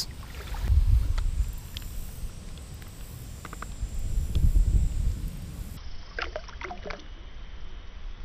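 Gentle water sloshing and dripping as a hand lowers a small largemouth bass back into shallow water, over low rumbling noise on the microphone, with a few faint splashes near the end.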